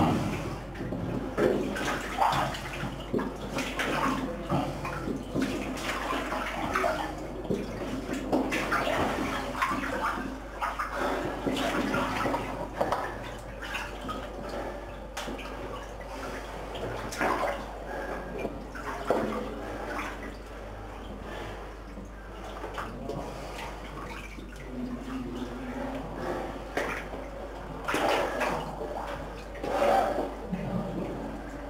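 Water sloshing and splashing irregularly as a person wades through waist-deep water.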